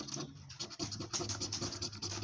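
Edge of a large coin scratching the silver coating off a paper scratchcard in quick, repeated strokes.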